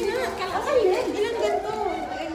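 Indistinct chatter: several people talking over one another in a large room.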